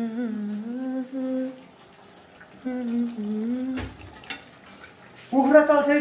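A person humming a tune in long held notes, in three phrases with short gaps, the last one loudest. A soft knock a little before four seconds in.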